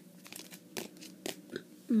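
Baseball cards in rigid plastic holders being handled and shuffled: a few sharp plastic clicks and rustles, about four in two seconds.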